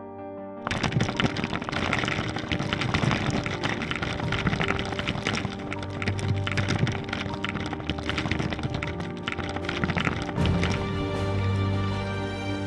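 Logo intro music: soft sustained synth tones, then a sudden loud hit under a second in that starts a run of crackling, clattering impact effects layered over the music. Near the end it settles into smoother tonal music.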